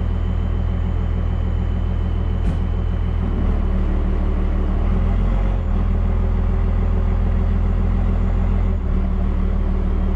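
Truck engine running steadily under load while it tows a felled tree on a rope, heard from inside the cab. The engine note rises slightly about three seconds in, and there is a single click a little before that.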